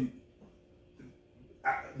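A pause in a men's conversation: low room tone with two faint short sounds, then a man's voice saying 'uh' near the end.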